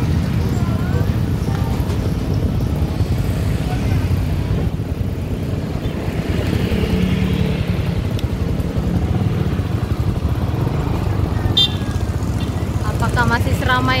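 Motor scooter engine running at a steady pace while riding along a street, with a low, steady rumble of wind on the microphone.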